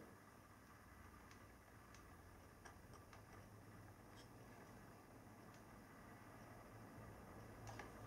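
Near silence: low room tone with a few faint, scattered light ticks of small plastic model parts being handled.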